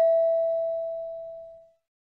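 A single chime note struck just before, its clear tone ringing and fading away over about a second and a half. It is the signal chime that marks the start of the next question in the listening test.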